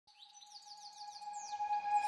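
A rapid series of short, falling bird-like chirps over a single held tone, fading in from faint to louder: the opening of an intro music track.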